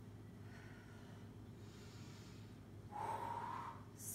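A woman breathing hard while exercising: faint breaths in the first half, then a louder, voiced exhale about three seconds in.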